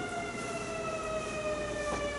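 An emergency-vehicle siren wailing, its pitch gliding slowly and steadily downward.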